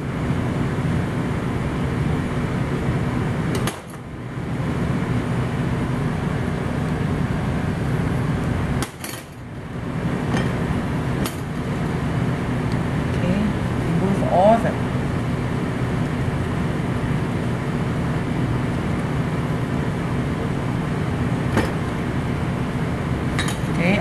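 Steady low background hum, with a few light clicks and clinks of a small knife against a ceramic bowl as tomato seeds and pulp are scraped out of the wedges.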